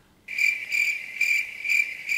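Cricket chirping sound effect, a steady run of high chirps starting abruptly about a quarter second in: the stock 'crickets' cue for an awkward silence.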